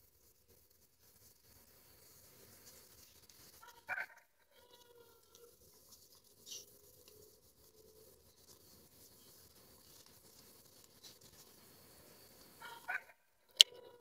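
Near silence with a few faint, brief sounds: the clearest is a short pitched sound about four seconds in, followed by faint wavering tones and a couple of small clicks near the end.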